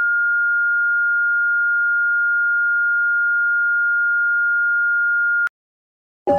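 Emergency alert alarm: a single steady high-pitched electronic tone, one pure note held unchanged for about five and a half seconds, that starts and cuts off abruptly with a click.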